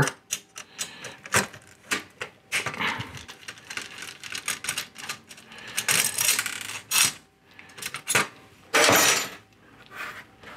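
Irregular clicks, knocks and scrapes of hard plastic and sheet metal as the plastic end stop and printhead carriage on an inkjet printer's steel carriage rail are worked loose by hand, with a longer rubbing scrape about nine seconds in.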